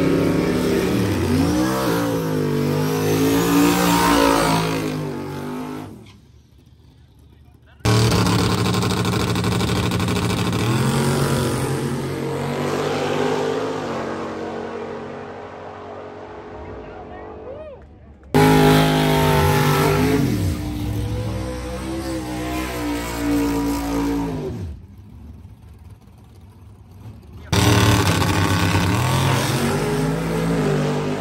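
Drag race car engines revving at the starting line, then launching and running down the strip, fading as they pull away. The sound breaks off abruptly twice into quieter gaps before the next car's engine cuts back in loud.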